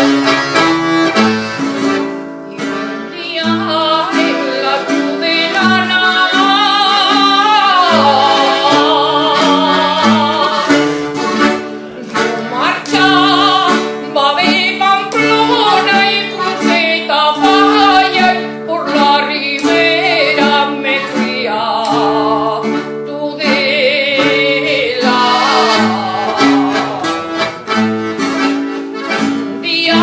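An older woman singing a Navarrese jota in a strong, wavering voice, accompanied by accordion and guitar. The accordion chords run throughout; the voice comes in about two and a half seconds in and sings in long phrases with brief breaks between them.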